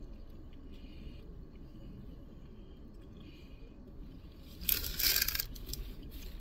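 Quiet eating sounds in a car cabin as two people chew sandwiches. About five seconds in there is a brief crackling noise from handling the food, the loudest sound here.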